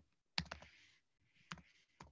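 A few faint, sharp clicks from a computer, of the kind made by keys or a mouse, picked up through a video-call microphone: a quick pair about half a second in and another single click about a second later.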